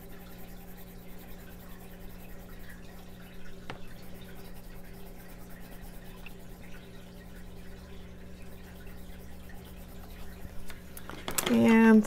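Coloured pencil shading on paper, a faint scratchy rubbing, over a low steady hum; one sharp click about four seconds in.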